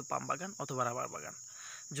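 Steady high-pitched drone of insects. A man talks over it, with a short pause in the speech near the end.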